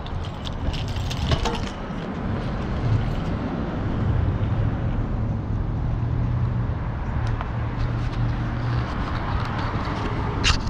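Street traffic with a motor vehicle's engine running nearby, a low steady hum that comes in about three seconds in and fades near the end. A few sharp clicks and rattles sound in the first couple of seconds.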